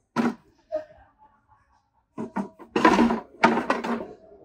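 Handling noise from a painted wooden tray being picked up and turned over on a wire shelf: a sharp knock at the start, then a cluster of clattering knocks and scrapes in the last two seconds.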